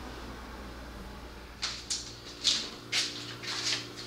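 Footsteps in flip-flops on a concrete floor: a string of sharp slaps about half a second apart, starting a little under two seconds in, over a low steady hum.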